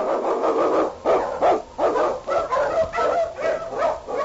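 A team of huskies barking and yelping, several dogs at once with overlapping barks that keep coming without a break.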